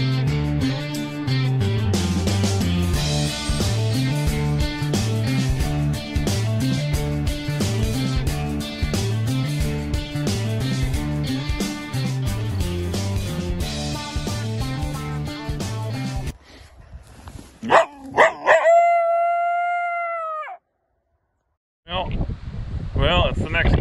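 Guitar-led intro music with a steady beat, which stops about sixteen seconds in. Then come a couple of short sharp sounds and a single long canine howl that rises, holds one pitch for about two seconds and falls away at the end.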